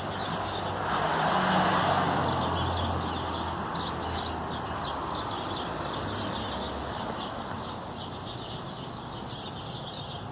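A car passing on the street, swelling about a second in and fading away over the next few seconds, with small birds chirping throughout.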